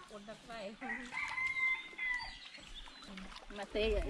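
A rooster crowing once: a single long, level call about a second in, lasting just over a second.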